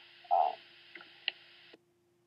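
A short vocal sound, then two small clicks about a second in, over steady recording hiss. The hiss cuts off abruptly just before the end, as the narration recording stops.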